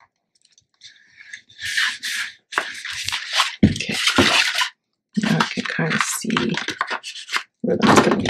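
Paper and cardstock being handled: a run of rustling, sliding and scraping noises as a printed paper liner is creased with a bone folder and pulled free of a card cover, with a single low knock about three and a half seconds in.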